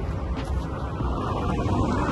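Steady low rumble of outdoor vehicle noise, with wind buffeting the microphone.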